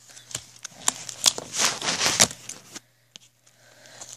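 Plastic blister packaging of a Pokémon card pack crinkling and crackling as it is handled and pried open by hand: a run of sharp crackles over the first three seconds, loudest twice near the middle, then a short lull.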